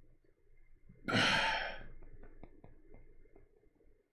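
A man's heavy sigh: one loud, breathy exhale about a second in that fades within a second, followed by a few faint ticks.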